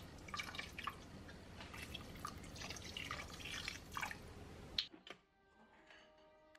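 Thin stream of dark sauce pouring and dripping onto meat in a stainless-steel pressure-cooker pot, with many small irregular drips and splashes. It ends with a sharp click near the end, and soft plucked-string music starts.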